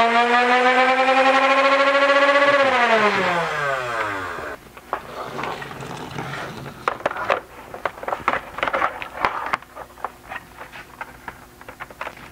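Nerf Rival Charger's flywheel motors running at 12 volts from a bench power supply, above the blaster's stock voltage: a steady high whine that falls away as the motors spin down over about two seconds. Then scattered clicks and knocks.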